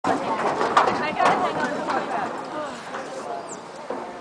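Indistinct talking, loudest in the first two seconds and then fading off.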